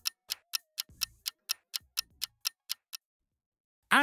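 Clock-tick countdown timer sound effect, sharp even ticks about four a second, which stop about three seconds in as the time runs out.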